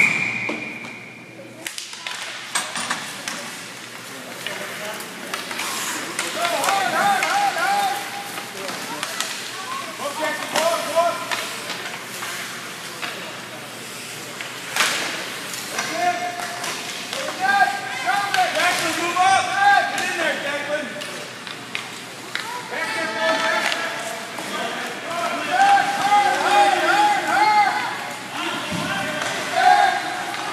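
Spectators' voices calling out and cheering across an ice rink during a youth hockey game, over a steady hall hum. There are scattered sharp clacks of sticks and puck, and a brief high tone right at the start.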